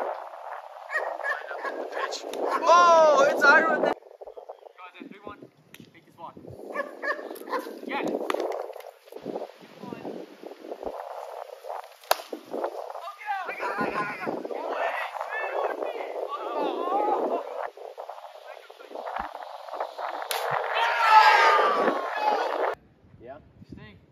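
Voices of players calling out during an outdoor wiffle ball game, mixed with a dog whining and yipping at times. About halfway through, a single sharp crack of a plastic wiffle bat hitting the ball.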